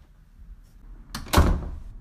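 A door shutting with a single heavy thud about a second and a half in.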